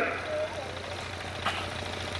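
A pause in an amplified speech: the man's voice trails off at the start, leaving a steady low hum under background noise, with one small click about one and a half seconds in.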